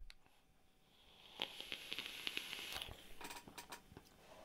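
Faint sizzle of a vape coil firing during a draw: a Dead Rabbit V2 dripping atomizer with two fused Clapton coils at 0.18 ohm, run at 50 watts on freshly dripped e-liquid. It starts about a second in and lasts about two and a half seconds, a soft hiss with scattered pops.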